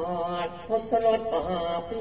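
A man's voice chanting sung verse in a drawn-out, melodic line: the nang talung puppeteer's recitation, with no drums playing under it.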